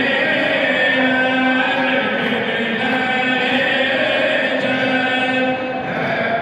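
Voices chanting a Turkish Islamic hymn (ilahi), holding long sustained notes.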